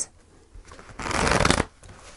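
A deck of tarot cards being shuffled by hand: light handling, then a burst of rapid card flicks about a second in, lasting about half a second.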